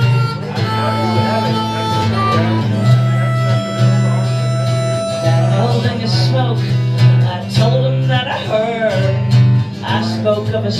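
Acoustic guitar played with a harmonica accompanying, the harmonica holding long single notes.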